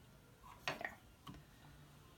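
A few faint, short clicks from fingers handling the thread and small metal parts at the bobbin-winder tension guide of a sewing machine. The sharpest comes about two-thirds of a second in, with a lighter one shortly after a second.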